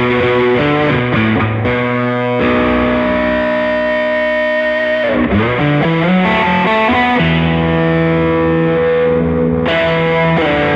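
Baritone electric guitar tuned to B standard, played through distortion: held, ringing low chords and sustained notes, with a pitch slide a little after five seconds in.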